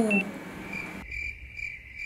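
Cricket chirping sound effect: a series of short, repeated chirps in an otherwise quiet pause. It is the comic 'crickets' cue for an awkward silence.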